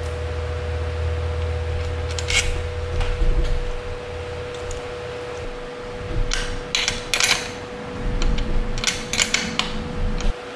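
Small metal clicks and clinks of bicycle caliper-brake hardware being handled as the brake is fitted to the frame, with washers being stacked on its long mounting bolt: one click about two seconds in, then clusters of clicks near the middle and again near the end. A steady hum runs underneath.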